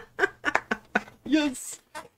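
A voice in a run of short, quick syllables, about five a second, then one longer drawn-out syllable followed by a brief hiss.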